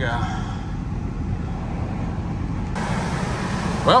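A vehicle engine running, a steady low rumble heard from inside the cab.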